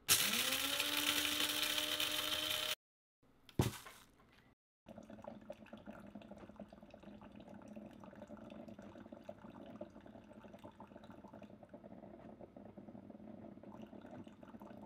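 Electric blade coffee grinder running for under three seconds, its motor pitch rising as it spins up and then holding steady before it cuts off. A single click follows, then a quieter steady low hum.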